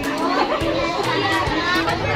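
Children's voices chattering over background music with a beat.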